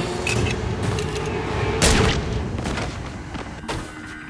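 Several loud 9 mm Glock pistol shots a second or two apart, the strongest about two seconds in and near the end.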